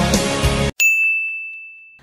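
Music playing stops abruptly under a second in. Straight after, a single bright, bell-like ding rings out and fades.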